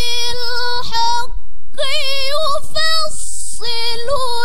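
A young woman reciting the Quran in the melodic tilawah style, holding long ornamented notes with a wavering, trembling pitch. There is a brief break a little over a second in and a hissing consonant about three seconds in.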